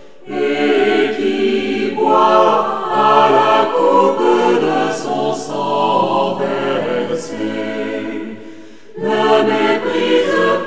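Choir singing a French sacred song in sustained phrases. There is a short break just after the start, and another about a second before the end, where a new phrase begins.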